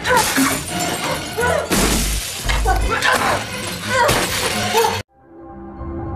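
Film fight sound effects: repeated crashing and shattering, with screams and cries over the score. It cuts off suddenly about five seconds in, and slow, eerie end-screen music fades in.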